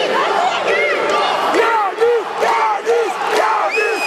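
Fight crowd shouting and yelling, many voices overlapping, with a few sharp knocks cutting through about two and three seconds in.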